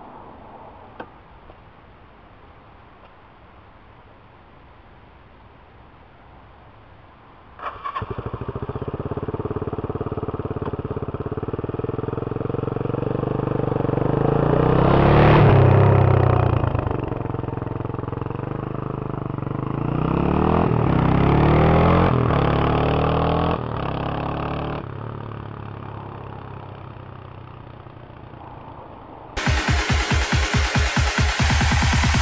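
Suzuki GN250 single-cylinder motorcycle engine starting about seven seconds in, then running and being revved as the bike rides off. The loudest moment comes about halfway, rising then falling in pitch as it passes, with a second pass a few seconds later before the engine fades away. Electronic music starts abruptly near the end.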